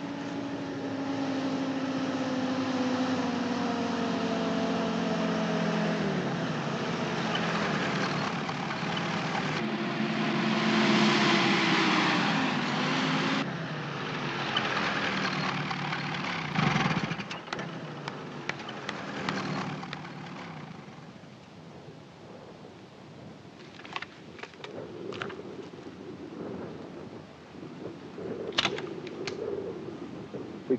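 Engines of off-road vehicles driving across open ground, their note falling in pitch twice before dropping away suddenly. Then a quieter engine rumble follows, with a few sharp clicks near the end.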